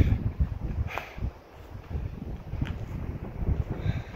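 Wind buffeting the microphone in uneven gusts, a low rumble that rises and falls, with a few brief scuffs or knocks.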